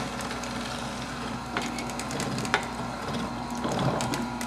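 Omega TWN30 twin-gear cold press juicer running, its gears crushing pieces of fresh ginger pushed down the feed chute with a wooden pusher: a steady low motor hum under a grainy crunching, with two sharp cracks about a second apart in the middle.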